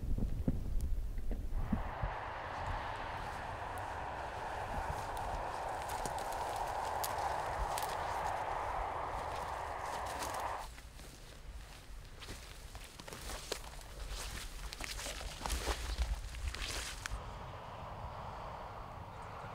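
A steady rushing noise for the first half. Then, about ten seconds in, comes a run of sharp, irregular clicks and hoof steps from a reindeer herd moving across the tundra.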